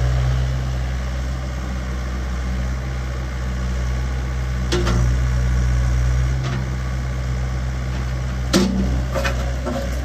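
Bobcat E80 compact excavator's diesel engine running steadily. A few sharp clunks come from the boom and bucket being worked, the loudest near the end.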